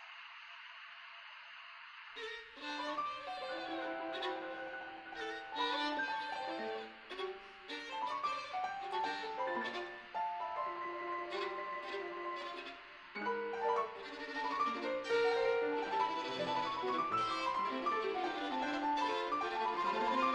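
Recording of a contemporary chamber piece for violin and piano, the melody passing back and forth between the piano and the violin. It starts about two seconds in, after a brief faint hiss.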